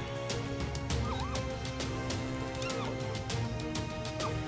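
Background music of sustained chords with light percussion, over which a zebra gives a few short whinnying calls, about a second in and again around three seconds in.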